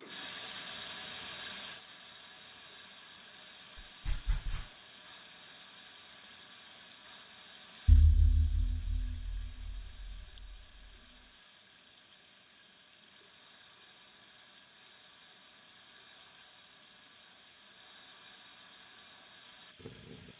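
A low, pulsing rumble, the kind of ominous sound-design hit used in horror films, starts suddenly about eight seconds in and fades away over about three seconds. Before it come a brief hiss at the very start and a few short knocks; the rest is a faint steady drone.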